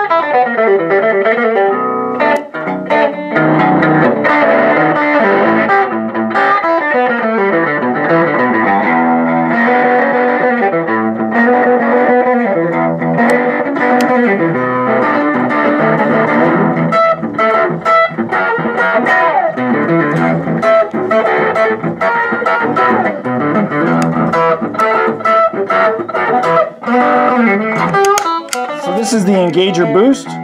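Electric guitar played through a Fender The Pelt fuzz pedal: a distorted, sustaining fuzz tone with chords and single-note runs.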